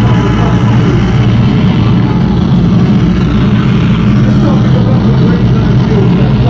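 Heavy band playing live at high volume: distorted electric guitar and bass hold a thick, sustained low drone, with shouted vocals over it.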